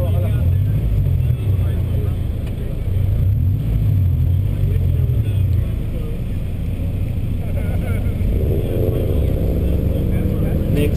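Honda Civic EK9's four-cylinder engine idling steadily in the staging line, picked up by a camera mounted outside the driver's door.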